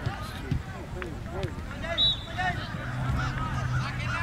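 Shouts and calls of players and spectators at an outdoor youth soccer match, short and scattered. About two seconds in comes a brief high whistle-like chirp, and near the end a low steady hum.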